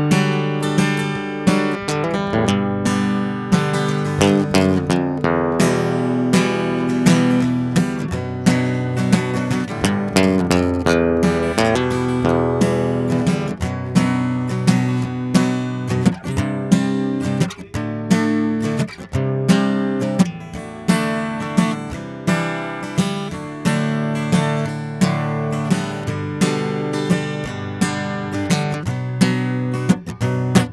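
Steel-string acoustic guitar strummed in a steady country rhythm, playing chords in G major.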